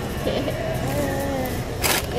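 Soft wordless vocalizing that glides up and down in pitch over a low steady rumble, with one short sharp click near the end.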